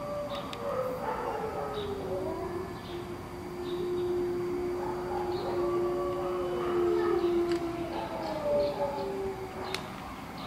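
Several animals howling together: long, overlapping calls that glide up and down in pitch, one of them held low and steady for about four seconds in the middle.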